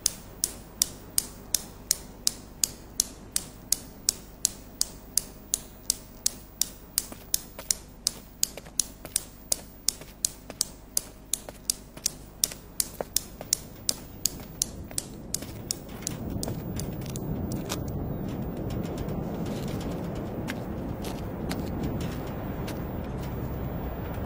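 Newton's cradle clacking: its steel balls strike each other in a steady rhythm of about three sharp clicks a second, fading over about sixteen seconds. After that a steady low rushing noise takes over.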